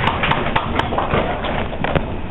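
Irregular sharp taps over a steady room noise, thinning out after about the first second.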